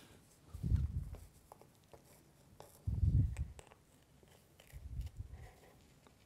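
Three dull low thumps about two seconds apart, with faint handling rustles and clicks, as pins are pressed through a jersey into a foam pin board inside a display case.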